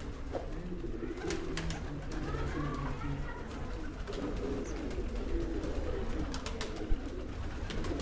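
Many domestic pigeons cooing together, a steady layer of overlapping low coos, with one sharp click about seven seconds in.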